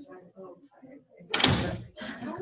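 Faint talking, then about one and a half seconds in a single loud thump lasting about half a second.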